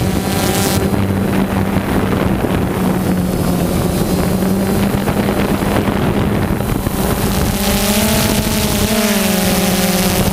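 Multicopter drone motors and propellers buzzing in flight with a steady low hum, with wind noise on the microphone. Late on, the hum rises in pitch and then drops back as the motors change speed.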